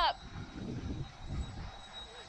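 Wind buffeting the microphone: an irregular low rumble with no steady tone or rhythm.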